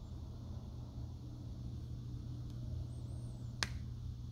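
A single sharp click about three and a half seconds in, over a steady low background hum.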